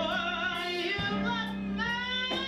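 Music: a woman singing a wavering, drawn-out melody over a steady held accompaniment.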